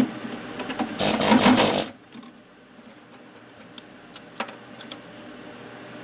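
Pneumatic air hammer with a flat chisel bit rattling against a laptop motherboard for about a second, chipping the ICs off the board. Scattered light clicks and taps follow.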